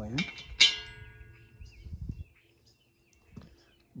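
A sharp metallic clink about half a second in, as a bolt knocks against the concrete mixer's metal drum, which rings briefly and fades. A few faint handling knocks follow as the bolt is fitted through the drum rim.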